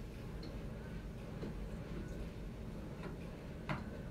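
A few faint clicks and knocks from a microphone and its stand being handled and adjusted, the clearest one near the end, over a steady low room hum.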